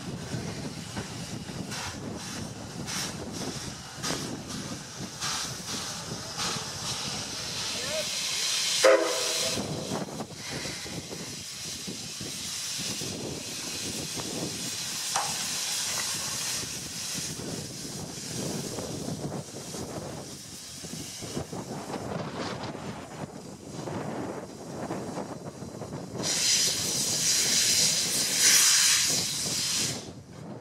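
C11 steam tank locomotive running past with its passenger cars, exhaust beats and wheel noise coming and going. A short whistle sounds about nine seconds in. Near the end there is a loud hiss of steam venting at the cylinders.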